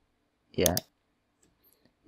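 Mostly near silence, broken about half a second in by a brief spoken word with two sharp clicks over it. The clicks are computer keyboard keys, pressed as a new line is typed into code. A few faint ticks follow near the end.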